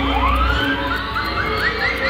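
Cartoon-style sound effect from the ride's soundtrack: a long rising whistle-like glide, then a quick run of about five short rising chirps, each a little higher than the last, over background music. There is a low rumble at the start.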